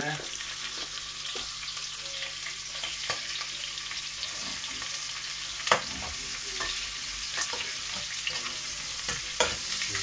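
Chicken gizzards and onion frying in a stainless steel pot with a steady sizzle, while a metal spoon stirs them and now and then clinks against the pot, loudest a little past the middle.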